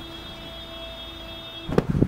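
Fabric being handled: a short, loud rustle and bump near the end as a kurti is lifted. Underneath is a faint steady tone with several pitches.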